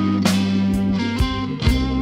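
Slow blues song in an instrumental passage: guitar over bass, with a few drum hits.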